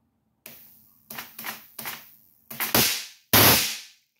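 High-voltage sparks cracking from an ion lifter's voltage multiplier supply of about 200,000 volts: about seven sharp snaps at irregular intervals, growing louder, with the loudest and longest near the end. The supply was overdriven from 28 volts of batteries instead of 24, which blew something in the multiplier.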